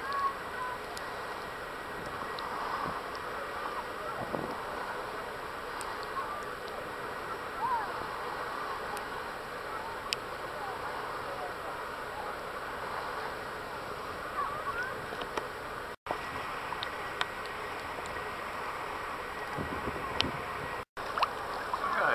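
Beach ambience: faint distant voices of beachgoers over a steady wash of bay water and light breeze. The sound cuts out briefly twice in the second half.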